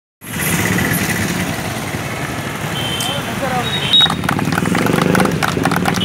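Roadside traffic noise with a couple of short vehicle horn toots, then from about four seconds in a small group clapping their hands.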